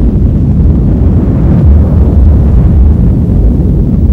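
Deep, sustained rumble of an atomic bomb explosion on an archive film's soundtrack, loud and low without any distinct bangs.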